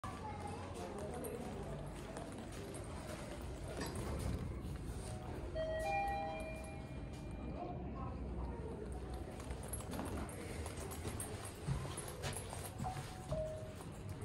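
Footsteps on a tiled lobby floor over steady background noise. About six seconds in, an elevator's arrival chime sounds, a held tone of about a second, as a car arrives; a brief tone follows near the end.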